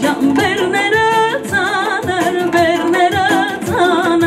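A woman singing into a microphone, amplified through a PA, with a wavering vibrato and ornamented melodic turns. Instrumental backing with a steady beat plays under her voice.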